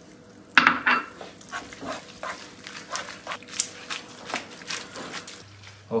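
Wooden spoon knocking and scraping against a frying pan as tagliolini are stirred with grated pecorino to make them creamy, a run of irregular clicks and knocks with the sharpest one about half a second in.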